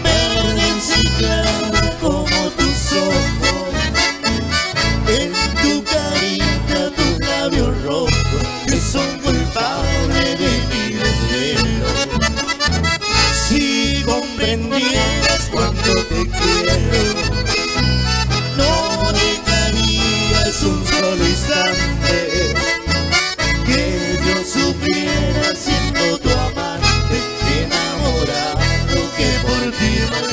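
Live chamamé band playing an instrumental passage between sung verses: accordion leading the melody over a steady, pulsing bass beat.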